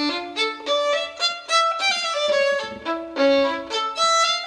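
A violin playing a melody, note after note, mixing short notes with a few longer held ones.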